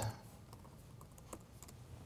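Faint keystrokes on a laptop keyboard: a few scattered clicks in the second half, over quiet room tone.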